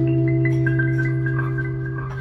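An acoustic guitar chord left to ring, with a few short, high single notes picked on top in the first second.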